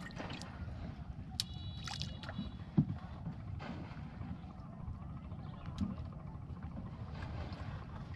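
A small wooden boat being paddled on a lake: water gurgling and lapping against the hull over a steady low rumble, with a few sharp knocks of wood on wood, the loudest about three and six seconds in.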